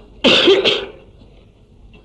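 A man coughs once: a short, harsh burst in two quick parts, about a quarter second in, dying away within a second.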